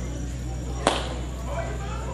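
A single sharp crack about a second in, over a steady background of street noise and faint voices.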